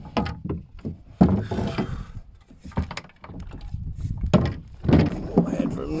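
Gear being handled aboard a wooden Mirror dinghy: a few irregular knocks and clunks of spars and sweeps against the hull, with a rustle of sail or rope about a second and a half in.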